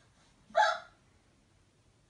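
A malamute giving one short, sharp yip about half a second in.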